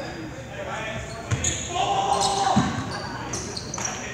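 A basketball bouncing on a hardwood gym floor, with two dribble thumps about a second and a half apart, short high squeaks between them, and spectators' voices echoing in the large gym.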